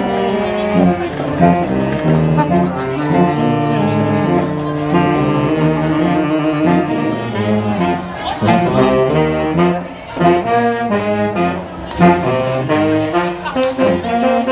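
A sousaphone and saxophones playing a tune together, the sousaphone on the low notes under the saxophones.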